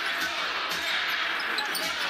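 Arena crowd noise during a basketball game, with a basketball being dribbled on the hardwood court.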